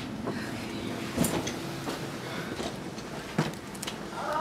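Bags and luggage being handled and set down, with a couple of sharp knocks, one about a second in and another near the end.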